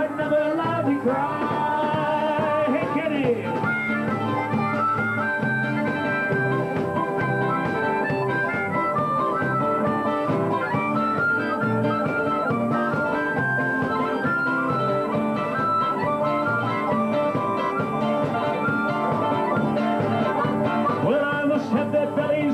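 Live bush band playing an instrumental break between verses of an Australian folk song: fiddle and guitars at a lively, steady tempo, with no singing.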